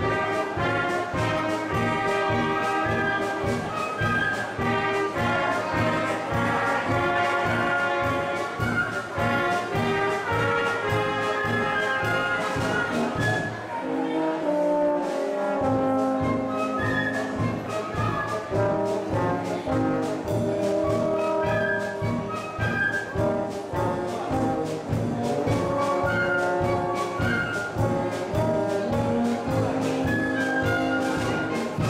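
Brass band playing dance music, trumpets and trombones over a steady oom-pah beat. About halfway through the low beat drops out for a couple of seconds, then comes back.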